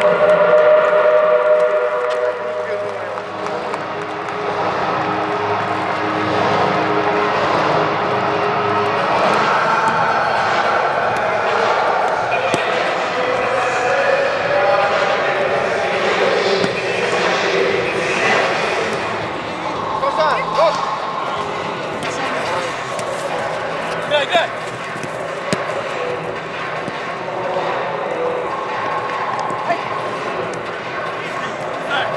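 Indistinct voices and shouts of footballers warming up, echoing in a large stadium, with a few sharp ball kicks in the second half.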